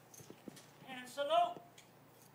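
A woman's voice at the microphone, brief and rising in pitch, about a second in, after a few faint clicks.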